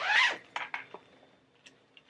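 A short, loud rasping rustle at the start, then a few light clicks and taps: something being handled off-mic.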